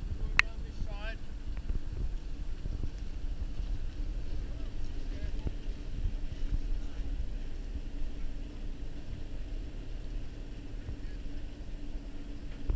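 Wind buffeting the microphone as a steady low rumble over a faint steady hum, with a sharp click about half a second in and a brief voice just after it.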